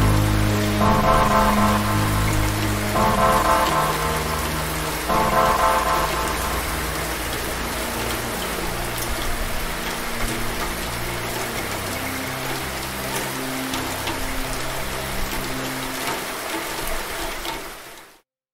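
Steady rain, a recorded sound effect, mixed under a synthesized instrumental outro. For the first several seconds the synth plays held chords that change about every two seconds. After that, slow low notes carry on under the rain, and it all fades out at the very end.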